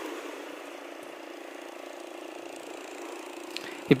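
Outboard motor of a small fishing boat heard from the shore, running steadily as a faint hum over the wash of breaking surf.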